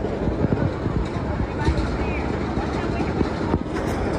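Busy city street ambience: indistinct chatter from a crowd of pedestrians over the steady noise of traffic, with scattered small knocks and footsteps.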